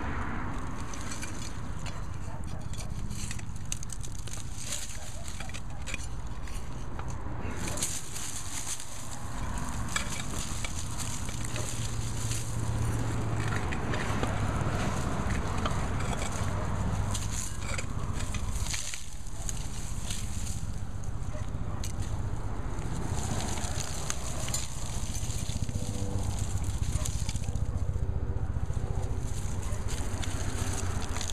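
Dry stalks and leaves crackling and potting soil crumbling as a dead Jerusalem artichoke plant is pulled by its root ball out of a clay flower pot. The crackle and rustle go on without a break over a steady low rumble.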